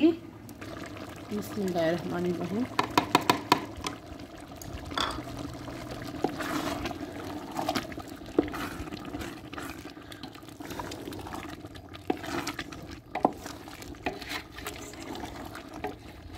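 A wooden spatula stirring tripe in a large aluminium pot, with scrapes and scattered knocks against the pot over the bubbling of the cooking liquid.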